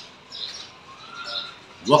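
Faint bird chirps: a few short, high calls in a quiet stretch, with a man's voice starting again near the end.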